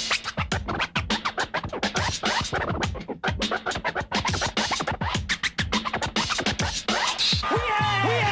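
Vinyl scratching on DJ turntables over a hip-hop beat, in fast back-and-forth cuts. Near the end the scratching stops and a track with a steady bass line comes in.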